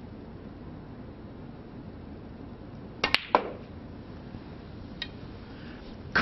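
Snooker shot on the green: a sharp click of the cue tip on the cue ball, then the click of the cue ball striking the green about three seconds in, and one softer ball click about two seconds later. A low steady room hum runs under it.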